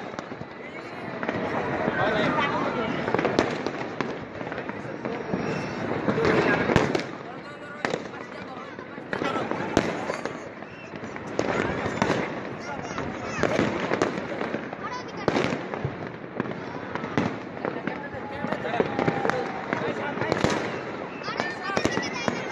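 Fireworks and firecrackers going off all around, many sharp bangs and cracks at irregular intervals.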